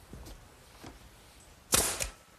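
A few faint clicks of hand tools on hardware, then near the end one short, loud burst from a corded power drill briefly running as it drives a fastener into the swing's wooden armrest.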